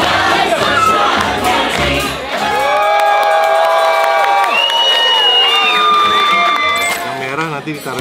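Loud dance-party music with a steady beat, over a crowd cheering and shouting. About two and a half seconds in the beat drops out and long held notes ring out for several seconds before the sound thins near the end.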